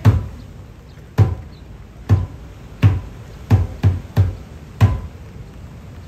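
Ipu, the Hawaiian gourd drum, beaten for hula: about eight low, sharp strikes, spaced roughly a second apart at first and then coming in a quicker run near the middle.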